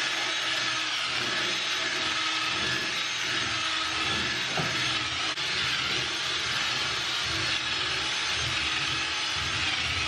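Ryobi 18V cordless drill running steadily, spinning a brush attachment that scrubs the bathtub floor through Comet scouring powder.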